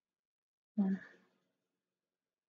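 A woman's single short voiced sigh, about a second in, fading quickly.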